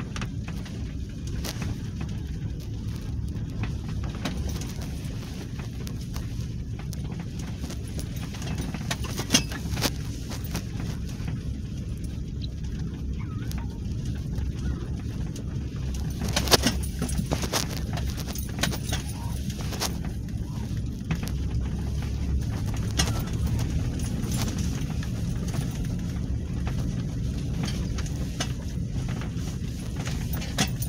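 Cabin noise inside a Toyota Land Cruiser driving slowly over a snowy track: a steady low engine and road rumble, with a few scattered knocks and rattles, the loudest about sixteen seconds in.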